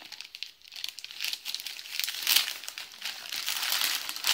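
Gift wrapping paper being torn and crumpled by a child's hands as a present is unwrapped, a crackly rustling that grows louder after about a second.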